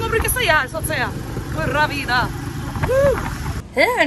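Voices talking over the low rumble of a small open vehicle in motion, with wind buffeting the microphone. The rumble cuts off abruptly near the end.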